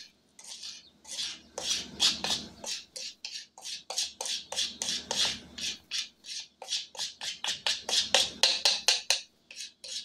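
A spoon scraping powdered seasoning mix out of a plastic bowl into a small cup, in quick rasping strokes about three to four a second that come closer together towards the end.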